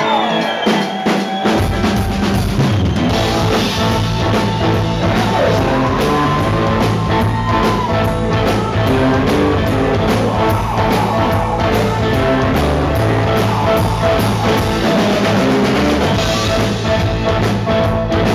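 Live electric blues-rock band playing, led by two electric guitars, a Telecaster-style and a Stratocaster-style, with notes bent. The drums and low end come in about a second and a half in, and the full band plays on steadily.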